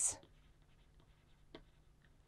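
Faint scratching and tapping of a stylus writing on a tablet screen, with one clearer tap about one and a half seconds in.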